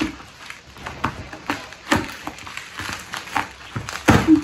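A parcel's packaging being handled and opened: irregular clicks, taps and rustles, with a few sharper knocks.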